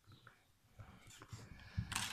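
Faint scattered clicks and light taps of handling: a metal belt clip and its screw being fitted against a cordless drill's plastic housing with a screwdriver.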